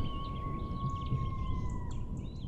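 Outro sound design of nature ambience: small birds chirping over a low rumble, with one held tone that dips slightly in pitch near the end.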